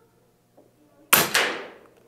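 A .25-calibre Air Venturi Avenge-X pre-charged pneumatic air rifle firing one pellet: a single sharp report about a second in, with a second smaller crack a quarter second later and a short fading tail.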